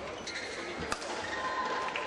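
Badminton rally: a sharp racket strike on the shuttlecock about a second in, with court-shoe squeaks and crowd voices.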